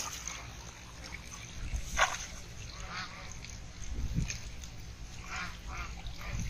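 Water splashing as fish thrash in a cast net being hauled up out of shallow pond water, in a few short separate bursts, the loudest about two seconds in.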